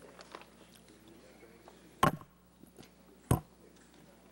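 Quiet room tone with a faint steady hum, broken by two sharp clicks, the first about two seconds in and the second about a second and a quarter later.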